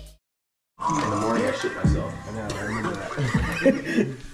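A short silence, then people talking indistinctly with music playing.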